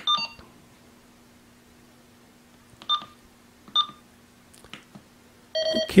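Uniden SDS100 handheld scanner beeping as its keypad buttons are pressed during setup. A short beep comes at the start, two more about a second apart midway, and a longer, lower, fuller tone near the end, over a faint steady hum.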